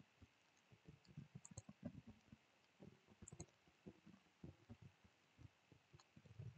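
Near silence: faint room tone with scattered soft low taps and a few small clicks, two of them paired, about one and a half and three and a quarter seconds in.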